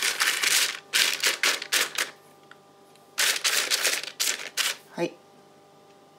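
A brush scrubbing oil onto a sheet of baking parchment: quick dry, scratchy strokes, about five a second, with the paper crinkling. The strokes come in two runs with a pause of about a second between.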